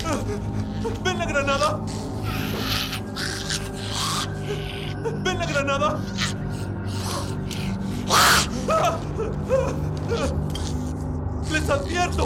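A man gasping, whimpering and breathing sharply in distress, with short strained cries at about one second and five seconds in and a loud gasp about eight seconds in, over a low steady drone of film-score music.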